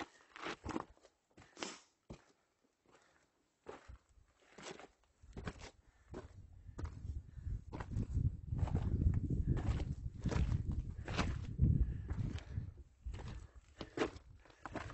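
Hiking boots crunching step by step on loose rock and gravel of a steep mountain trail. From about six seconds in, a low, uneven rumble builds and becomes the loudest sound.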